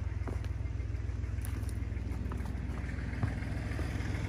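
An engine idling steadily, a low even throb.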